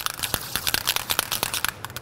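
Masking paper crinkling and rustling as it is handled, in quick irregular crackles.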